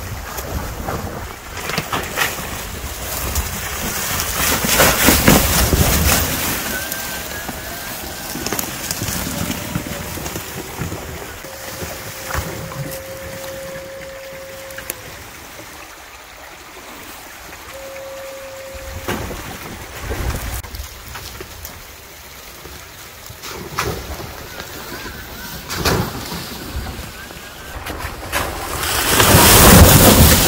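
Electric rock-crawler buggy with a Tesla drive motor crawling over leaf litter and sticks. The tyres give a rustling, crackling noise that swells and fades, with wind buffeting the microphone. About halfway through, a steady whine is held for a few seconds, then briefly again.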